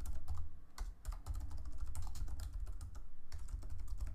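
Computer keyboard typing: a quick, steady run of keystrokes as a line of code is entered, with a brief pause a little after three seconds in.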